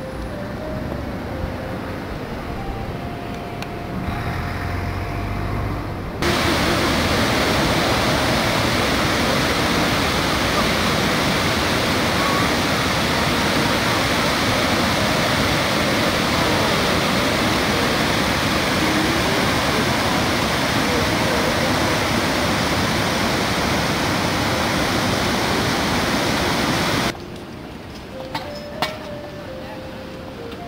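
Water pouring over a curved, stepped river weir: a loud, steady rush that starts suddenly about six seconds in and cuts off suddenly just before the end. Before it there is a quieter outdoor background with a brief faint tone.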